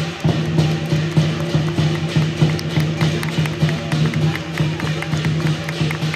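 Live lion dance percussion: a large Chinese lion drum beaten in a fast, steady beat, with crashing hand cymbals.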